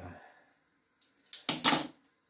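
Several quick cracking snaps over about half a second, a little past the middle, as the stuck cap of an aluminium paint tube is twisted loose, breaking the seal of dried paint that had glued it shut.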